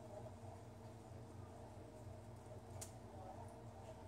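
Near silence: room tone with a steady faint low hum and a single faint click about three quarters of the way through.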